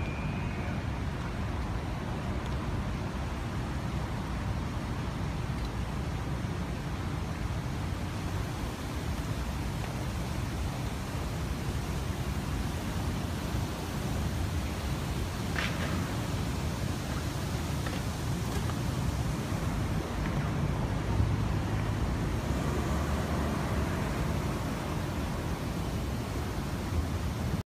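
Steady city street traffic noise, a continuous low rumble of passing cars. A brief high-pitched sound cuts through about halfway.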